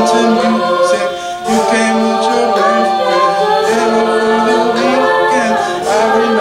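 Mixed-voice collegiate a cappella group singing held chords that shift from one to the next, with no recognisable lyrics, and a brief dip in loudness about a second and a half in.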